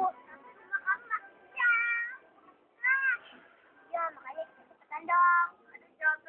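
A series of high-pitched, cat-like meows: about five short calls with pauses between them, each rising and then falling in pitch, the longest about a second and a half in.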